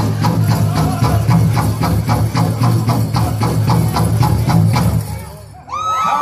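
Powwow drum group playing a fast, steady beat on a big drum while men sing a men's fancy dance song. The drumming and singing stop about five seconds in.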